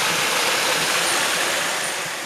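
Steady rush of flowing river water, an even hiss without pitch.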